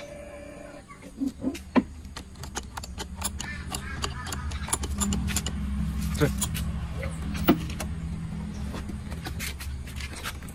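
Repeated sharp clicks and rattles of a Honda scooter's ignition key and handlebar controls being worked, over a low steady hum that grows louder in the middle and fades near the end.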